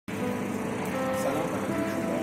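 Steady outdoor background noise of distant road traffic, with a few faint held tones and a short rising tone about halfway through.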